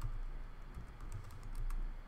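Computer keyboard being typed on: a short run of light, irregular key clicks as a command is entered at a terminal.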